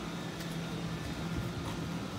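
A steady, even mechanical hum, like a fan or air-handling unit, with no sudden sounds.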